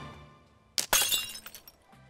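Background music fades out, then a single glass-shattering crash about a second in, followed by a short tinkling of falling shards.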